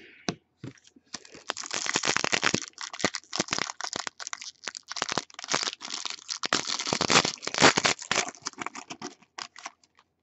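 Topps baseball card pack's foil wrapper crinkling and tearing as it is opened by hand, a dense crackle from about a second in until near the end.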